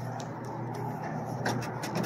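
A steady low machine hum, with a few faint clicks and knocks scattered through it.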